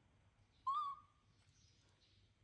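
A baby monkey gives one short, high-pitched coo call that wavers slightly in pitch, about two-thirds of a second in.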